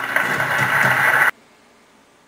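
Television audio from a show's closing credits, a loud dense noisy sound that cuts off abruptly a little over a second in, leaving a quiet room.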